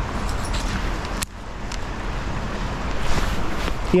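Steady rush of shallow river water with a low rumble, broken by a sharp click about a second in and a louder splashy stretch near the end as a hooked small trout is played to the bank.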